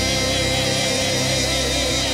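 Live worship band music, with a singer holding one long note with a wide vibrato over steady keyboard, guitar and drum accompaniment.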